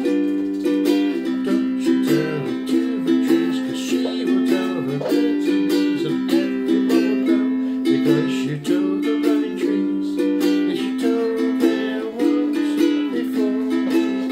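Cocobolo five-string concert ukulele strummed in chords with a quick, even rhythm, the chords changing every second or two.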